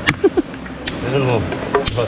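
Machete chopping dry sticks for firewood on a rock: three sharp strikes about a second apart.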